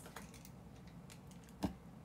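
Faint light taps and clicks of fingers on a tablet's touchscreen, irregular, with one sharper tap near the end.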